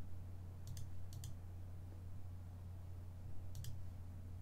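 Computer mouse clicks: three sharp clicks, about a second in, a moment later and near the end, each a quick double tick of press and release. A steady low hum runs underneath.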